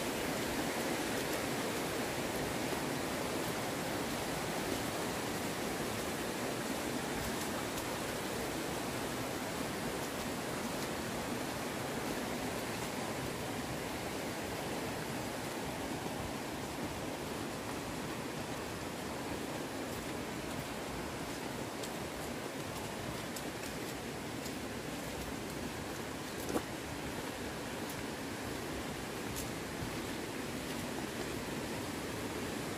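Steady, even outdoor rushing noise with no rhythm or pitch, and one brief faint click near the end.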